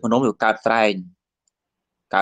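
A man speaking in a steady preaching voice, cutting off about a second in, followed by dead silence.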